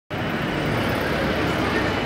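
Busy city street ambience: steady road traffic with the voices of passers-by.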